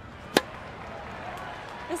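A single sharp impact about a third of a second in, over steady outdoor background noise.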